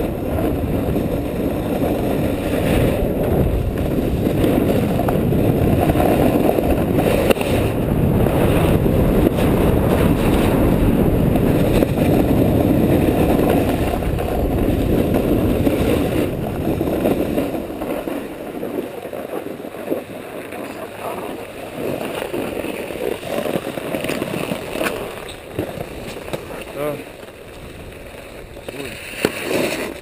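Wind rushing over an action camera's microphone and skis running on packed snow during a downhill run. About seventeen seconds in it drops off as the skier slows, leaving quieter ski scrapes and scattered clicks of skis and poles.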